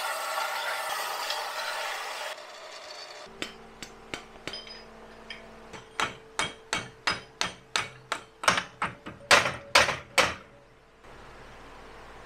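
A bench belt sander runs for about two seconds, grinding down a steel shaft. After a break, a hammer taps the steel shaft down into pillow-block bearing housings: a string of sharp knocks that get quicker and louder partway through, about three a second.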